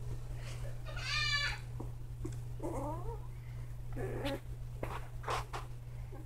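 Young Labradoodle/Goldendoodle cross puppies whimpering. There is a high, falling squeal about a second in, and lower, wavering whines near the middle and around four seconds in, over a steady low hum.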